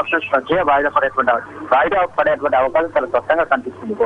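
A man speaking continuously over a telephone line, his voice thin, with the treble cut off.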